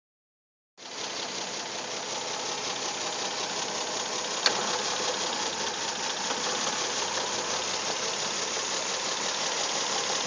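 A 2008 Kia Rondo's V6 engine idling rough and barely running, at about 500 rpm, with the whole engine shaking while the check engine light flashes. A single sharp click comes about four and a half seconds in.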